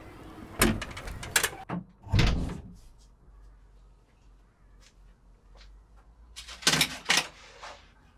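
A door being opened and shut: a few sharp clicks and knocks, then a heavier thump about two seconds in. A short cluster of clicks and knocks follows near the end.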